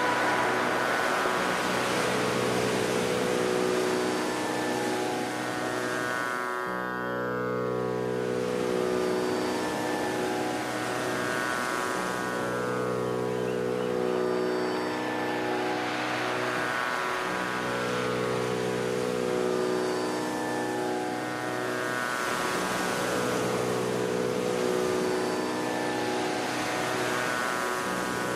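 Steady tanpura drone as background music, its held tones shifting about every five seconds over a faint even hiss.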